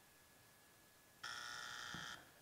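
An electronic game buzzer sounding once, a steady harsh tone held for about a second, starting a little past halfway after near silence.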